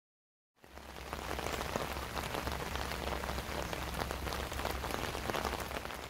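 Steady rain, dense drops hitting a surface over a low rumble, starting suddenly about half a second in and dropping away near the end.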